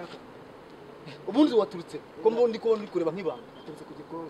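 A man's voice speaking a few short phrases, starting about a second in after a quieter opening.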